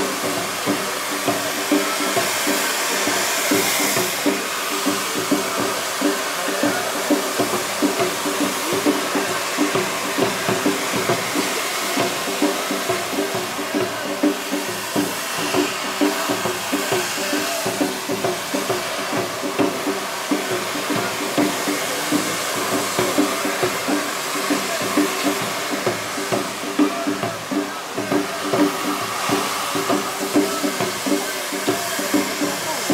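Hand-held bamboo tube fireworks (tezutsu hanabi) spraying sparks with a continuous rushing hiss, with frequent sharp cracks throughout.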